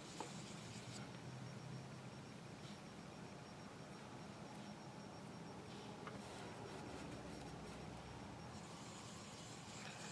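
Faint scratchy rubbing of a fingertip in a pressed-powder eyeshadow pan and on the skin of the forearm as the shadow is swatched.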